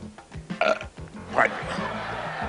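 A man's brief throaty vocal noises between phrases, with music playing underneath.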